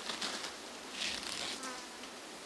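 A Komodo dragon feeding on a deer carcass in dry grass: two short bursts of rustling, about a second apart, with a faint insect buzz.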